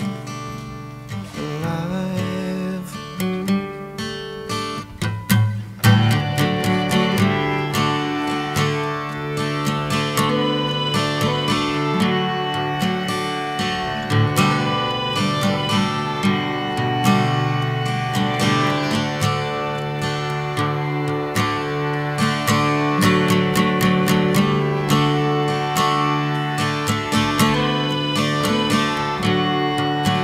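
Acoustic guitar playing an instrumental passage of a folk song with no vocals. It is softer and sparser for the first few seconds, then a strong strum about six seconds in leads into fuller, steady strumming.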